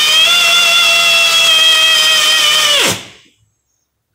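Pneumatic drill driving a Time-Sert M11x1.5 tap into a head-bolt hole in an aluminium first-generation Northstar 4.6 block, running at a steady high whine. It is released about three seconds in and its pitch falls as it spins down to a stop, the tap having reached its depth mark.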